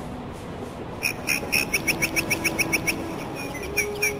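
A small bird calling: a quick run of short, high chirps, about eight a second for two seconds, then a slower few near the end.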